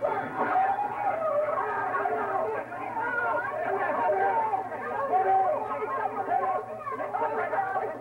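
Several actors' voices talking and exclaiming at once, overlapping into a hubbub with no single voice standing out.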